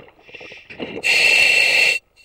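A diver breathing in through a surface-supplied demand regulator, heard over the diving comms: a loud steady hiss with a whistling tone, starting about a second in and cutting off suddenly.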